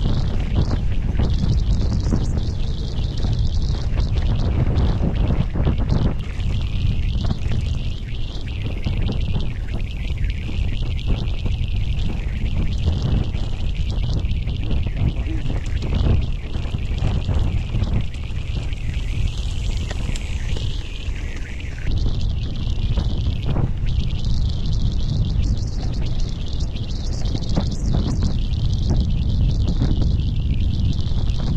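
Mountain bike rolling down a dirt and grass track: tyre noise with many short knocks as the bike goes over bumps, under a steady low rumble of wind on the chest-mounted camera's microphone.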